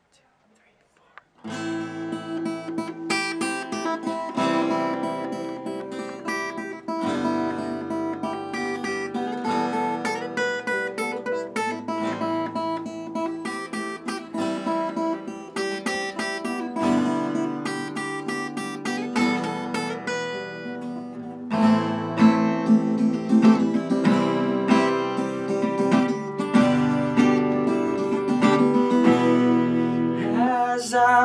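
Acoustic guitars and a bass guitar playing the strummed instrumental intro of an acoustic song. It starts about a second and a half in, after a moment of silence, and gets louder about two-thirds of the way through.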